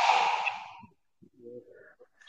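A person's breathy exhale or sigh into a microphone, sharp at first and fading out within about a second, followed by a faint short murmur.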